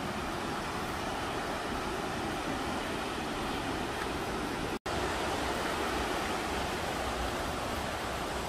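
Steady rushing of a waterfall. The sound drops out for a split second a little before the five-second mark, then carries on unchanged.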